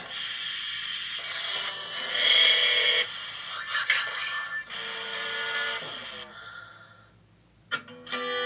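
Television static hiss from the music video's intro, a steady noise with faint tones in it, fading out over the last two seconds. An acoustic guitar starts strumming right at the end.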